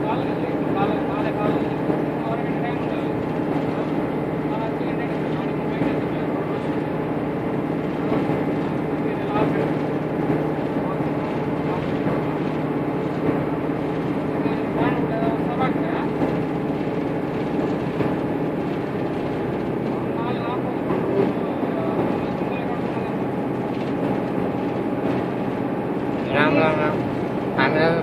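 Steady engine and road drone heard from inside a moving vehicle, with a constant low hum, and people talking in the background; the voices get louder near the end.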